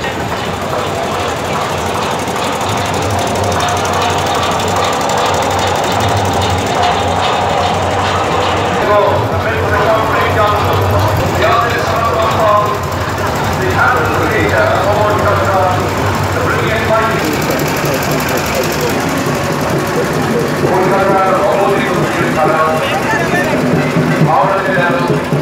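A heavy diesel truck engine runs at low speed with a steady low rumble, fading out about two-thirds of the way through. From the middle onward, people's voices talk over it.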